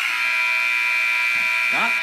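Arena buzzer horn sounding one steady, loud buzz about two seconds long, marking the end of the first quarter as the game clock runs out.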